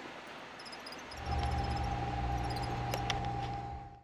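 Faint high-pitched chirping, then a steady electric hum with a thin whine that starts about a second in and fades out at the end.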